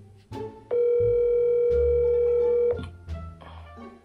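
A phone's ringing tone heard through its speaker: one steady, loud tone lasting about two seconds, starting a little under a second in, as the call rings out. Light background music with plucked notes plays under it.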